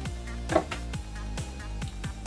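Background music with a steady beat and a low sustained bass.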